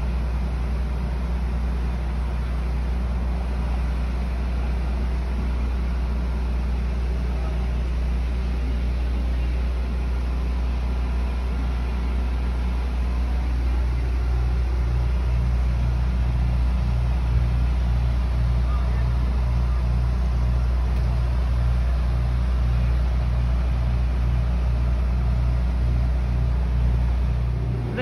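Parked truck's engine idling with a loud, steady low rumble, "a little loud"; about halfway through a regular throbbing pulse comes into it.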